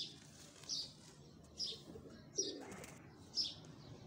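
A small bird chirping, a short high chirp about once a second. About two and a half seconds in, a brief lower sound with a rustle.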